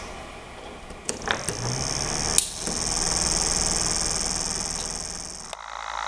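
Homemade reed switch motor with a four-magnet rotor, driving a plastic propeller. A few clicks come first, then a high, rapidly pulsing buzz with a low hum as it spins, swelling and then fading. It cuts off abruptly near the end.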